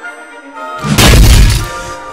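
A loud crash, a single heavy impact sound effect, about a second in and lasting about half a second, over background music.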